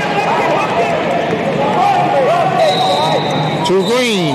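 Indoor arena hubbub: many overlapping voices of coaches and spectators calling and shouting across the hall. A faint steady high tone comes in about two-thirds through, and a loud voice call falls in pitch right at the end.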